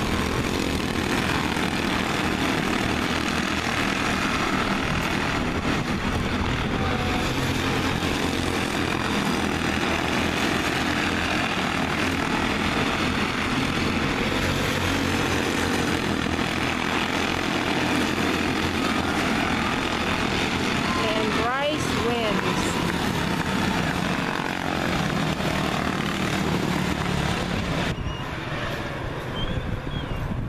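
A pack of Honda-engined quarter midget race cars running steadily around an oval. A pitch sweep comes as a car passes about two-thirds of the way in. The engine noise eases near the end as the field slows after the finish.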